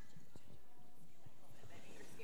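Scattered soft knocks and faint voices in a room, in a pause without music.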